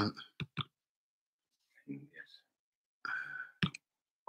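A few short, sharp clicks, twice in quick succession about half a second in and again near the end, with quiet muttered words between them.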